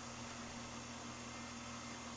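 Quiet room tone: a steady hiss with a faint low hum.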